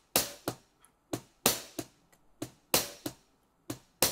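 Sampled drum sounds triggered by fingers on a Native Instruments Maschine MK3's pads: a slow, sparse drum-machine beat of separate short hits, about two or three a second, with hi-hat hits among them.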